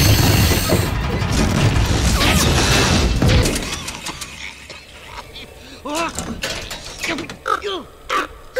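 Animated digging machine's drill grinding and clanking into rock, loud for the first three and a half seconds and then fading away. Short vocal sounds follow near the end.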